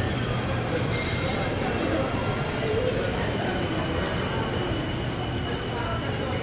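Steady shopping-mall ambience: a murmur of distant voices over a continuous low rumble, with a faint high steady tone.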